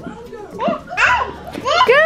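A two-year-old toddler's voice in short, high-pitched spoken bursts.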